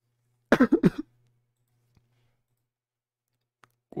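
A person coughs once, a short choppy burst about half a second in.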